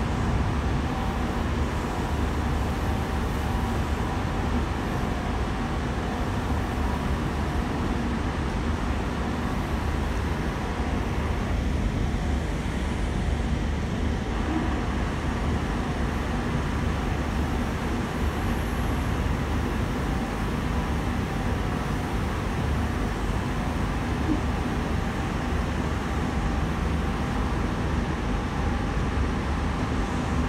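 Running noise heard inside a Sydney Trains K set double-deck electric train travelling at speed: a steady rumble of wheels on rail, with faint steady whining tones above it.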